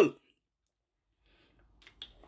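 Near silence after a man's spoken word ends, with a faint click near the end.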